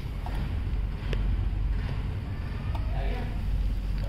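A steady low rumble with a few faint light clicks and rustles as cables are handled inside an open desktop computer case.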